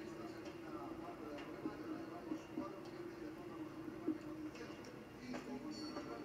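Faint, indistinct voices and arena background from a show-jumping broadcast, heard through a television speaker, over a steady low hum.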